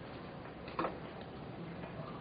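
Faint background noise of a 911 telephone call recording, with one short sharp click a little under a second in.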